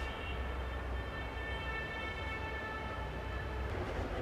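Faint, steady low hum with a thin, steady high whine of several tones above it, unchanging throughout.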